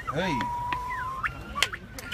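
A man shouts a short "hey", and over it comes a whistled note held steady for about a second, then one sharp clap or slap near the end.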